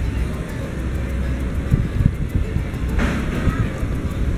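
Steady low outdoor rumble, with a brief faint voice about three seconds in.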